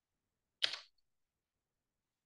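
A single short click about half a second in, otherwise silence.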